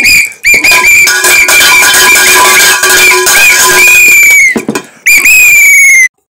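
A plastic pea whistle blown hard in shrill, trilling blasts, very loud: a short one at the start, one long warbling blast, then a brief break and another blast near the end.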